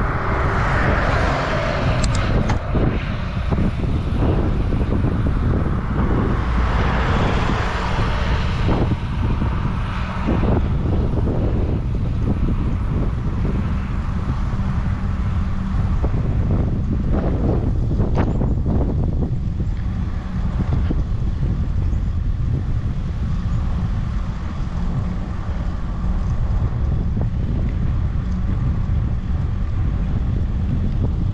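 Wind buffeting the microphone of a GoPro on a bicycle riding at about 20 km/h, a steady low rumble throughout. A car that has just overtaken pulls away, its hiss fading over the first couple of seconds.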